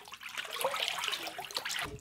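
Milk sloshing and swirling in a large bucket as it is stirred by hand with a metal spoon, mixing in mesophilic cheese starter culture.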